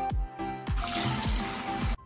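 Water running from a bathroom sink tap, starting about two-thirds of a second in and cutting off suddenly at the end, over background music with a steady beat.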